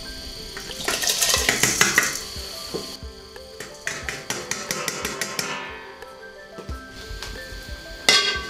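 Glutinous rice poured from a steel bowl into a cast-iron pot of water, a brief rushing patter of grains about a second in, followed by a few metal clinks as the pot lid is put on. Background music plays throughout.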